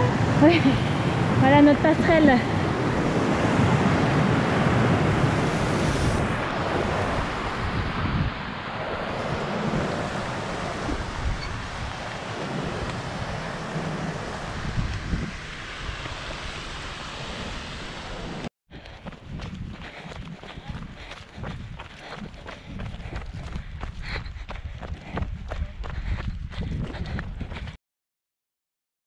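Rushing mountain stream mixed with wind on the microphone, loudest at first and easing off gradually, with a brief voice in the first couple of seconds. After an abrupt cut about two-thirds through, a quieter stretch of rapid, irregular clicks and crunches.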